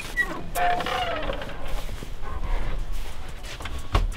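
A muffled voice in the background, then a sharp click near the end.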